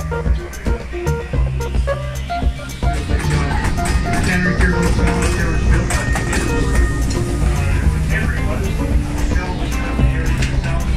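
Background music with a run of bass notes changing about every half second.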